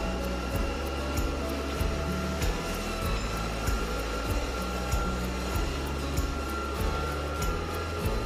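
Background music with a steady beat: regular ticking percussion over held low bass notes that change every second or so.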